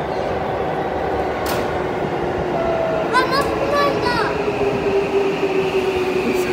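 A Tokyu 9000 series commuter train standing at an underground station platform, giving off a steady hum and rumble, with a tone that slowly sinks in pitch over the last few seconds. A single click sounds about a second and a half in, and a child's voice calls out briefly about three seconds in.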